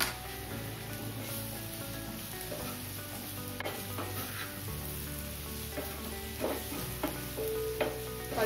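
Wooden spatula stirring and scraping spiced amla pieces in a hot pan, the oil still sizzling, with a few light clicks of the spatula on the pan. Soft background music plays underneath.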